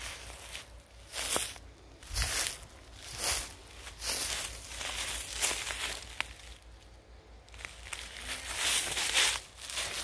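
Footsteps through dry grass and fallen leaves, about one step a second.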